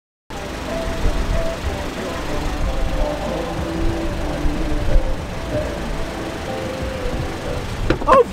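Steady low rumble of a car, with faint muffled music of short held notes underneath.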